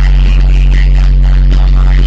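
Music played loudly over a stage sound system: one long, steady, very deep bass note held unchanged, with fainter higher sounds above it.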